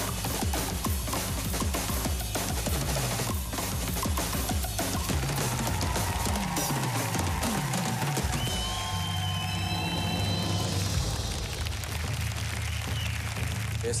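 Fast drumming on several drum kits, with rapid snare, tom and cymbal hits, over backing music. In the second half the hits thin out under a steady bass line and sustained tones.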